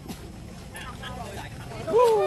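A steady low rumble with faint voices in the background, and a child's voice rising in pitch just at the end.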